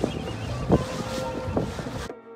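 Wind buffeting the microphone over the steady rumble and water wash of a moving tour boat, with a brief louder gust about a third of the way in.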